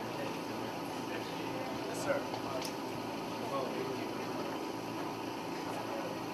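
Indistinct murmur of several people talking quietly over a steady background hum, with a couple of faint clicks about two seconds in.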